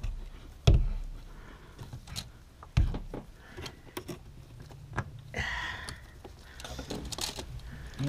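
Pliers and hands working a spring hose clamp onto a rubber vapour hose in an engine bay: scattered clicks and knocks, two louder knocks about a second and about three seconds in, and a brief scrape a little after halfway.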